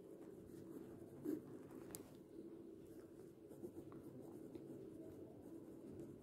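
Faint scratching of a pen writing on lined notebook paper.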